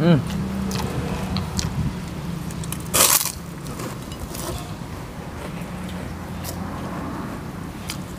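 Eating at the table: chewing and small clicks, with one loud crunch about three seconds in, a bite into a crisp cracker (kerupuk). A low steady hum runs underneath.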